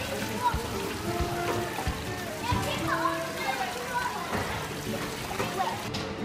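Water splashing and sloshing at a children's water play table, under children's voices and music.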